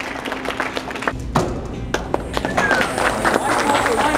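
Indistinct voices of people talking in a large hall, with scattered taps and clicks throughout. A low rumble comes in about a second in.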